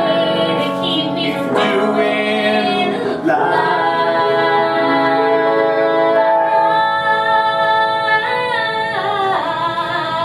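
A woman singing a show-tune-style song in long held notes that glide between pitches.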